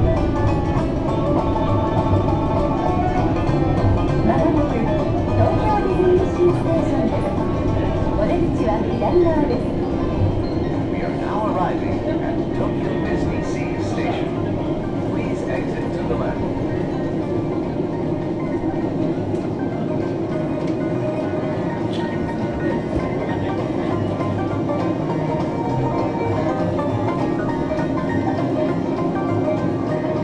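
Disney Resort Line monorail running, heard from inside the car: a steady running rumble with background music playing in the car.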